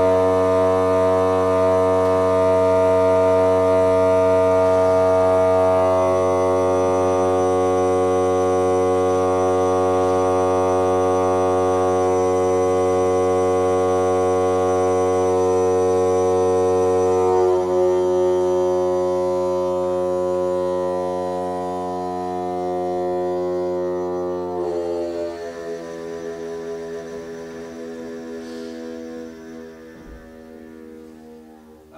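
Pipe organ holding long sustained chords over a low pedal note. The chord changes about six seconds in and again just past halfway. The low note stops about three-quarters of the way through, and the final chord fades away in the reverberant chapel.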